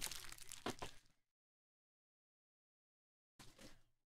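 Foil card-pack wrappers crinkling as they are handled: a crackly burst of about a second at the start, then a shorter, fainter one near the end.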